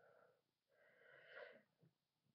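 Near silence, with a faint breath through the mouth or nose swelling and fading about a second in.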